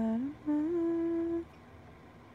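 A woman humming with her lips closed: a short note sliding upward, then a higher note held steady for about a second before it stops.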